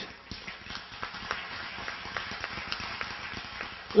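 A congregation applauding, a steady patter of many scattered hand claps.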